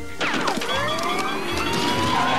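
Cartoon sound effect of a long, slowly rising whistle, like a steam whistle or siren winding up, for a character overheating from hot chili with steam pouring out of his ears. A short falling swoop comes just before it.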